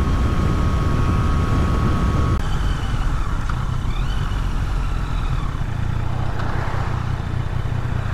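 Yamaha Tracer 900 GT's three-cylinder engine running under way, mixed with road and wind noise, with a thin steady whine that stops about two seconds in as the bike eases off and slows.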